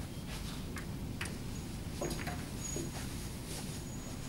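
Snooker balls clicking lightly against each other and onto the table as they are gathered and set out, a few scattered clicks over a steady room hum. A faint thin high tone comes in about a third of the way through.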